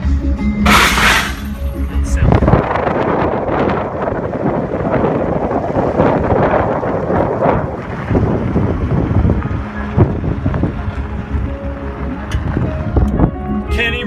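Vehicle driving on a gravel desert road, heard from inside the cabin: music from the car stereo plays at first, with a brief rush of noise about a second in. From about two seconds in, loud wind buffeting on the microphone and rough tyre and road noise with many small knocks cover it.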